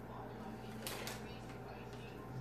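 Faint background speech over a steady low hum, with two quick clicks about a second in.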